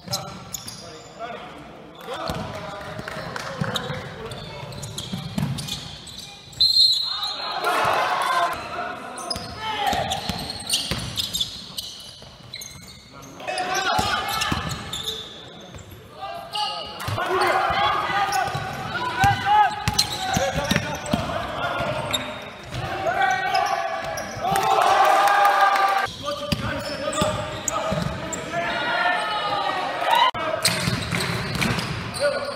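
Basketball dribbling and bouncing on a wooden gym floor during play, with players shouting and calling to each other, echoing in a large sports hall.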